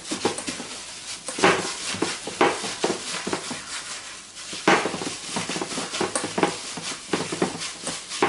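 A hand in a thin plastic glove kneading a mixture of grated hard-boiled egg and cheese in a glass bowl. The mix squishes and the glove crinkles in irregular strokes, two of them louder.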